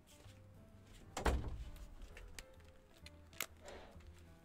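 A wooden room door pushed shut with a heavy thunk about a second in, over faint background music, followed near the end by a sharp click and a brief rustle.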